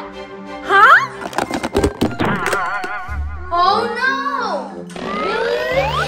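Background music for a children's video with cartoon sound effects laid over it: several quick rising whistle-like glides, a wobbling tone in the middle, and a thunk.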